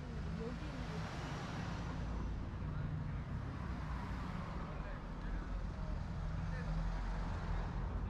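Street ambience: road traffic going by, with a broad swell of vehicle noise and a low rumble, and people's voices faintly in the background.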